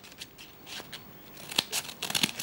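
Scissors cutting open a yellow paper mailer envelope: a few quiet snips with soft paper rustling.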